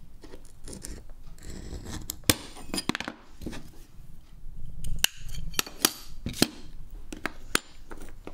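Glass being scored with a hand-held wheel glass cutter, a scratching stroke about two seconds in, then a series of sharp clicks and taps as glass pieces and the cutter are handled and set down on the wooden work table.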